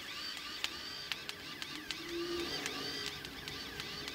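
MIG welder arc, struck by a novice, sputtering and crackling in irregular sharp pops. A high sound that rises and falls repeats about every two-thirds of a second alongside it.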